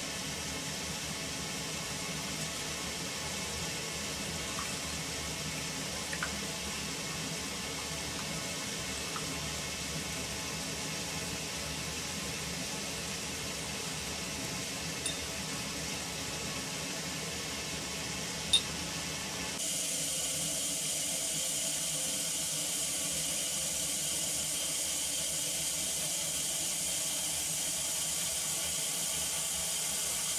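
Distilled crude styrene trickling through a small glass funnel into a 50 ml flask, a steady pouring sound with a few faint clicks of glass. About two-thirds of the way in it gives way to a brighter steady hiss from the distillation flask boiling and foaming under vacuum.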